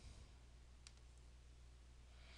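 Near silence with a low steady room hum and a single faint mouse click a little under a second in, as the Next button is clicked.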